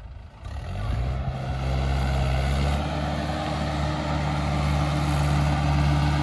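Mahindra 585 DI XP Plus tractor's diesel engine coming up over the first second and then running steadily as the tractor pulls forward across sand.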